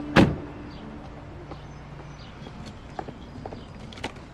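A car door shutting with one loud thump just after the start, followed by quiet background and a few faint footstep clicks near the end.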